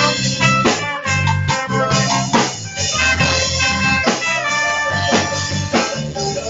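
Live reggae band playing loudly: a heavy bass line and regular drum strikes under sustained keyboard and guitar tones.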